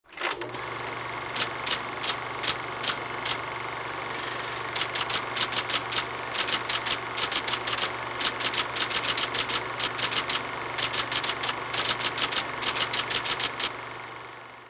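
Typewriter keys striking one by one: six slow strokes, then, after a pause, quicker uneven runs of strokes. Under them runs a steady hum and hiss.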